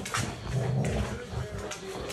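Two Rottweilers playing and jostling at close range, with dog vocal and breathing noises and scuffling.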